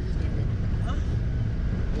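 Steady low rumble of a Tata Sumo's diesel engine and its tyres on a rough gravel track, heard from inside the cabin.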